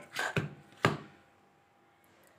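Hand kneading soft wheat dough in a steel bowl: three short dull thuds of the dough being pressed and knocked against the bowl in the first second.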